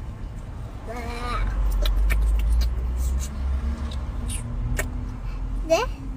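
A young girl's voice over a steady low rumble: a short wordless vocal sound about a second in, a few small clicks and taps, then a rising questioning "Ne?" at the end.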